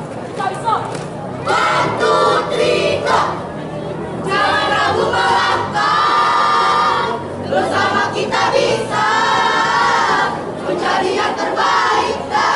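A troop of girls chanting a yell in unison, half sung, in several phrases, the longest notes held for two or three seconds.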